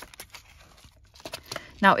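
Light paper rustling with a few small clicks as hands handle envelope pages and metal mini brads; the clicks bunch together about a second and a half in.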